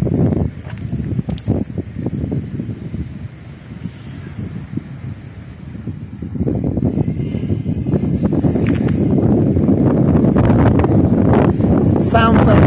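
Wind buffeting the microphone: a low, gusting rush of noise that dips, then grows louder about halfway through and stays loud.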